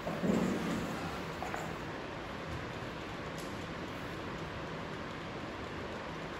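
Steady background hiss of room noise, with one brief low sound just after the start.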